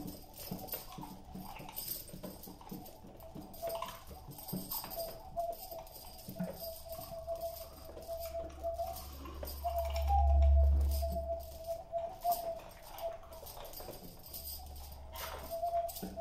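Quiet free improvisation by a mixed acoustic ensemble: a held, wavering tone over scattered small percussive taps and jingles. A low swell rises about ten seconds in, fades, and returns near the end.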